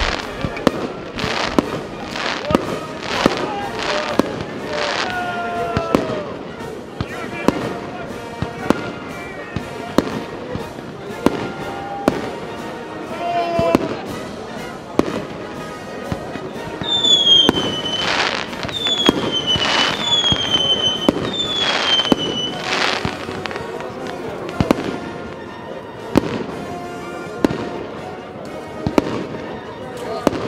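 Fireworks display: a steady run of sharp bangs from bursting aerial shells, about one every second. Midway, four high whistles from whistling fireworks, each dropping slightly in pitch.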